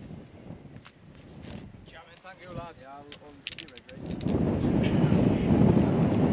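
Faint voices with a few light clicks, then about four seconds in, a loud low rumble of wind buffeting the microphone takes over.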